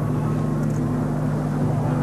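A steady low hum with several fixed tones, under an even hiss, holding at one level with no change.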